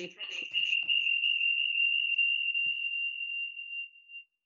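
A steady, high-pitched ringing tone on the video-call audio, like audio feedback. It sets in under the last words of speech, holds on one pitch, and fades near the end into short blips.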